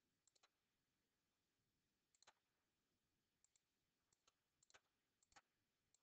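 Faint computer clicks, about a dozen short taps scattered irregularly, as numbers are entered into an on-screen calculator.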